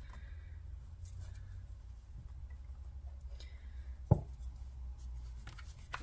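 Faint rustling of tarot cards being handled off-camera over a steady low room hum, with one sharp tap a little after four seconds.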